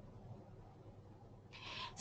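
Near silence: faint microphone room tone, then a short soft breath near the end, just before speech resumes.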